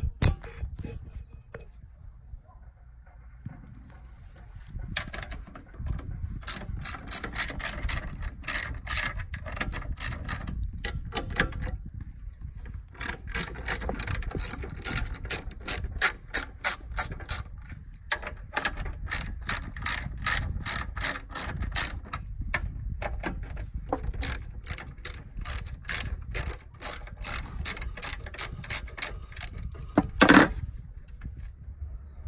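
Hand ratchet wrench with a 13 mm socket clicking in long runs, about four clicks a second, as it turns the seat hinge bolts on a Vespa PX200, with short pauses between runs. A single sharp knock at the very start.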